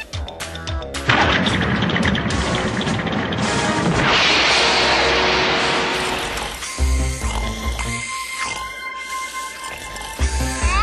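Cartoon soundtrack: background music with a loud, noisy crash-like sound effect that runs from about a second in to past the middle, then music notes alone.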